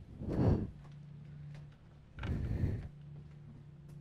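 Two short puffs of noise on a close microphone, each about half a second long and about two seconds apart, over a steady low electrical hum.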